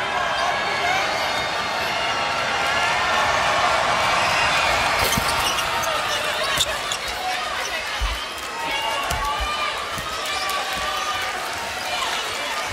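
Live basketball game sound: crowd voices in the arena throughout, with a few sharp knocks and, in the second half, a basketball thumping on the hardwood court as it is dribbled.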